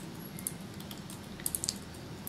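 A few light clicks from a computer keyboard and mouse, most of them bunched together about one and a half seconds in, over a low steady hiss.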